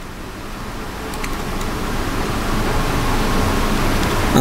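Steady hiss of background noise with no distinct source, growing gradually louder, with a few faint clicks about a second in.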